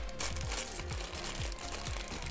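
Foil blind-bag packet crinkling as it is pulled and torn open by hand, over background music with a steady low beat.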